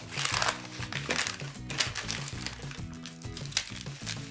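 Brown paper wrapping crinkling in the hands as a bar of soap is unwrapped, over steady background music.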